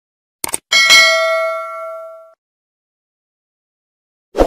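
Two quick clicks, then a single bright bell ding that rings out and fades over about a second and a half: the stock click-and-bell sound effect of a subscribe-button animation.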